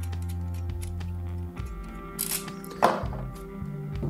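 Background music with steady held notes, over which a small plastic camera mount is handled and taken apart: a brief rustle a little after two seconds and a sharp click near three seconds.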